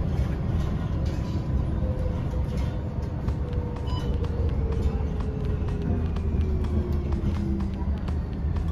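Inside a moving city bus: steady low engine and road rumble, with a whine that falls slowly in pitch over several seconds, and scattered light clicks and rattles from the cabin.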